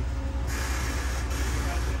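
1991 Cadillac Fleetwood V8 idling steadily, heard from beneath the car at the tailpipe as a low exhaust hum with no rattle, its muffler now refitted at the proper clearance.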